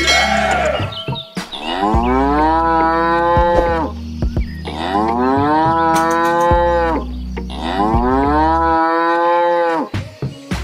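Cow mooing three times, each moo long, rising and then held, over a steady low hum.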